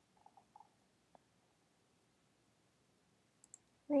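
A few faint clicks of a computer mouse: a small cluster in the first half second, a single click about a second in, and two light ticks near the end.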